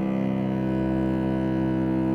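A cello holding one long, steady bowed low note.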